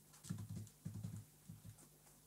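Faint computer keyboard keystrokes: about seven quick taps in loose pairs as letters are typed into a crossword grid.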